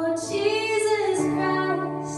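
A woman singing a slow song, accompanying herself on the piano with long held chords under her voice.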